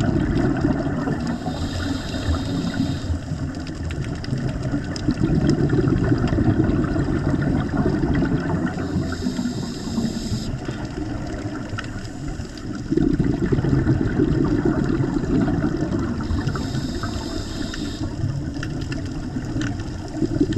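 A diver's scuba regulator heard underwater, breathing in a slow cycle. Three times, a brief high hiss of inhalation about a second and a half long alternates with longer stretches of low bubbling rumble from exhaled air.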